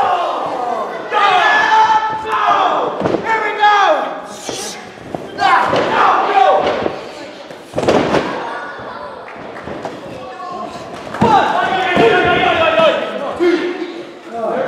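A wrestler's body slamming onto the ring mat about eight seconds in, with smaller thuds around it, between stretches of shouting voices in a large hall.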